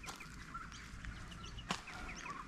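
Faint chirps of small birds in the background, many short calls scattered throughout, with one sharp tap or click near the end.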